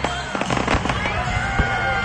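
Aerial fireworks bursting overhead: a quick run of sharp pops and crackles in the first second, over the steady sound of music and crowd voices.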